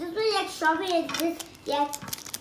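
Young children's high-pitched voices talking, words unclear.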